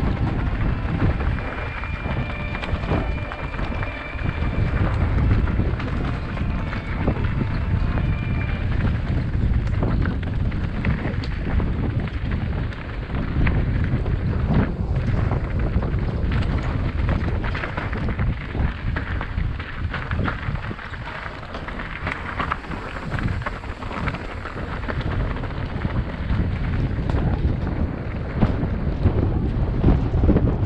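Wind buffeting a helmet-mounted camera's microphone as a mountain bike rides down a rocky trail, with tyres crunching over loose stones and the bike rattling and clattering over the rough ground.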